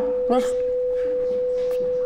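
A patient-monitor flatline: one steady, unbroken electronic tone, following a few quick beeps. It signals that the patient's heart has stopped.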